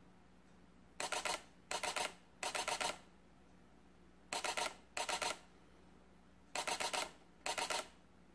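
Sony A77 II's shutter firing in short high-speed bursts while tracking a subject in continuous autofocus: seven bursts of rapid clicks, each about half a second long, the first about a second in.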